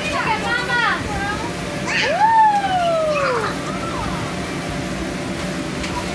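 Young children shouting and squealing as they play in an inflatable bounce house, with one long falling cry about two seconds in, over a steady low hum from the bounce house's air blower.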